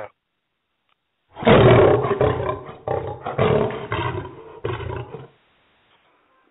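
A loud animal-like roar, in about four surges over some four seconds, starting about a second and a half in.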